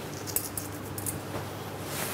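Faint light ticks and patter of salt being sprinkled by hand over cooked spaghetti in a steel bowl, with one sharper click about a third of a second in.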